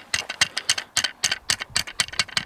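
Small hammer tapping a nail into the ground to fix a catapult ramp's base, in quick light strikes of about six a second.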